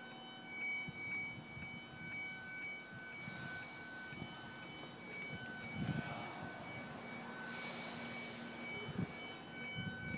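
The car's electronic warning chime beeping in a steady, regular run of short beeps, over a faint steady hum. Soft rustles and knocks of the phone being handled come and go, the strongest about six and nine seconds in.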